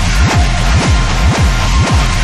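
Industrial EBM music: a deep electronic kick drum beats a steady pulse, each hit dropping in pitch, under a dense layer of distorted synth noise and faint held synth tones.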